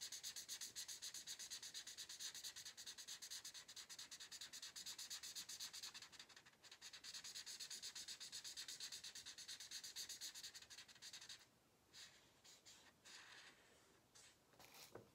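Felt-tip marker colouring on a sheet of paper, a fast rhythmic rubbing of several back-and-forth strokes a second. It dips briefly about six seconds in and stops about eleven seconds in, leaving only a few faint scattered sounds.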